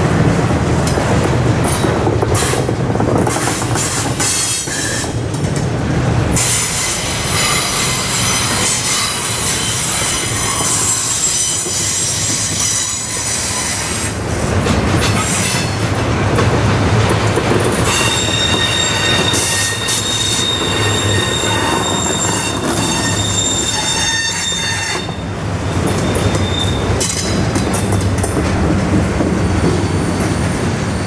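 Double-stack container cars of a freight train rolling past: a steady rumble of steel wheels on rail with clicks over the joints. High-pitched wheel squeal comes in long stretches, about a quarter of the way in and again past the middle.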